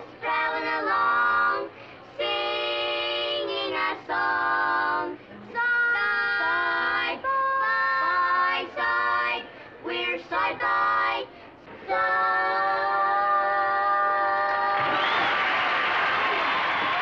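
A quartet of young boys singing close harmony in held chords, phrase by phrase, ending on one long held chord. Applause and cheering break in over the last second.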